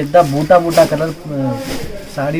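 A person talking continuously.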